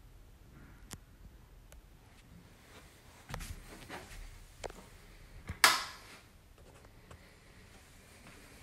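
Quiet room with a few scattered light clicks and knocks, then one sharp, much louder knock about five and a half seconds in.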